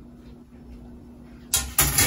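Quiet room tone with a faint steady hum, then, about one and a half seconds in, a short, sudden clatter as an air fryer grill tray is handled and set down on a wooden cutting board.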